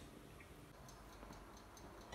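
Near silence: faint room tone with a light, rapid ticking, about four to five ticks a second.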